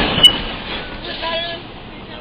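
Wooden roller coaster train rolling slowly on the final curve into the station, its rumble fading as it slows. A sharp click about a quarter second in, and a brief faint squeal or call a little past one second.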